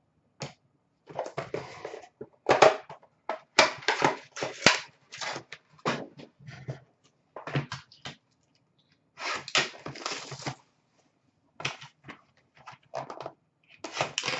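Handling noise: irregular rustles, taps and scrapes of cardboard card boxes and plastic card cases being moved about and put away, in quick uneven bursts with short gaps between.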